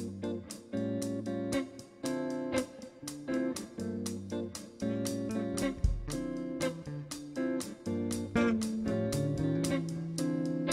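Live band playing an instrumental groove: clean electric guitar chords over electric bass and a drum kit. One low thump about six seconds in stands out above the music.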